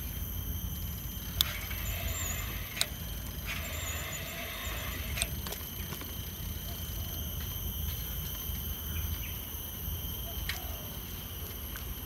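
Steady wind and tyre rumble on a handheld phone's microphone while riding a bicycle along a paved park path, with a few sharp clicks scattered through and faint bird chirps twice early on.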